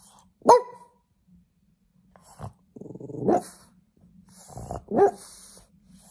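Blue French bulldog barking for attention: a sharp bark about half a second in, the loudest, then two longer barks that build up before peaking, about three and five seconds in.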